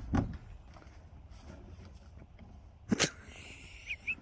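Metal-framed feeder trough knocking as it is shifted: a soft knock at the start and one sharp clank about three seconds in, with little else between.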